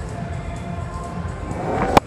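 A cricket bat striking the ball hard: one sharp crack just before the end, over steady stadium crowd noise that swells just before the shot.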